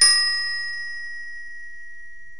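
A bell 'ding' sound effect, struck once and ringing out with a clear tone that slowly fades.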